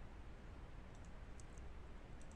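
A few faint computer mouse button clicks about a second in, over a low steady room hum.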